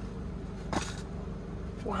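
A small hinged metal tin's lid clicks open once, about three-quarters of a second in, over a steady low hum.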